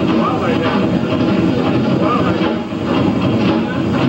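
Live jazz band music with the drum kit prominent, sounding muddy and distorted on an old camcorder tape.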